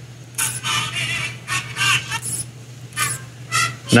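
Tiny speaker of a miniature video-player screen giving short, tinny snatches of sound from its preloaded clips, about seven bursts with little bass, as channels are flipped with push buttons.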